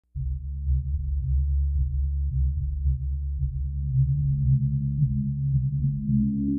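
Low, steady modular synthesizer drone of a few held bass tones, starting a fraction of a second in as the song's intro.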